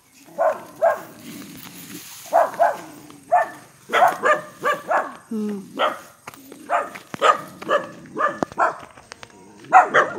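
Dog barking repeatedly at the camera in short barks, coming in clusters of several barks a second.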